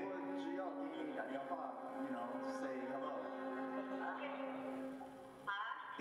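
Intro of a hip-hop backing track played over the hall's speakers: held, sustained tones with a voice over them. The sound dips briefly near the end.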